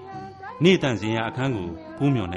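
A person's voice in a drawn-out, sing-song delivery with wavering, gliding pitch and held notes. Faint background music sits underneath.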